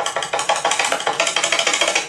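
A recorded automated phone-menu voice fast-forwarded into a rapid, high-pitched chatter of about ten short pulses a second, racing through the skipped menu options. It cuts off suddenly.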